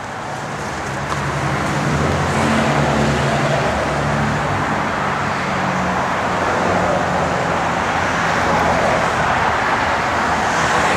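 A motor vehicle's engine running steadily at a low, even pitch, with a broad rushing noise over it.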